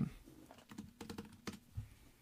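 Faint keystrokes on a computer keyboard: about half a dozen quick clicks as a number is typed in.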